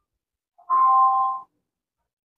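A short electronic chime: two steady tones sounding together, starting about half a second in and lasting under a second.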